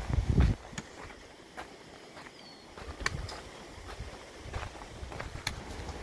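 Footsteps on a dry dirt and gravel trail: irregular crunching steps with scattered small clicks. A louder low thump comes right at the start.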